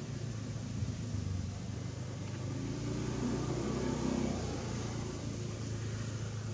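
Low steady engine rumble that swells about three to four seconds in and then eases, like a motor vehicle running nearby.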